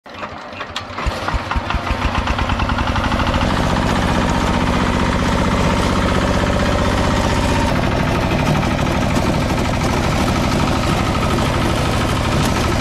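Walk-behind power tiller's single-cylinder diesel engine picking up speed: its separate firing beats quicken over the first few seconds, then it runs steadily under way.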